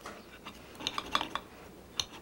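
Cutlery and dishes clinking at a dinner table: a quick cluster of short clinks about a second in.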